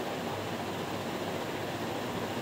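Steady, even rushing noise of a ceiling fan running in a small room.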